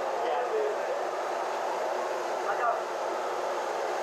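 Steady running noise from a supercharged Toyota 5VZ-FE V6 pickup creeping forward at low speed, with faint voices in the background.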